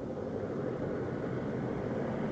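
A steady, even rumbling noise with no distinct events or tones.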